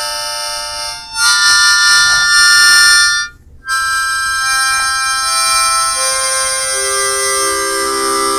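Music on a wind instrument: long held notes and chords, steady in pitch, with a short break about three and a half seconds in.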